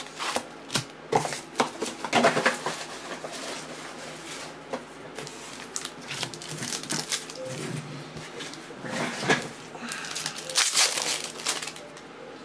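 Shiny foil wrapper of a Panini Select basketball card pack crinkling in uneven spurts as hands open it and pull out the cards. It is loudest about two seconds in and again near the end.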